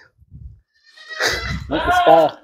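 A Gulabi Hyderabadi goat bleating once, a wavering call that starts about a second in.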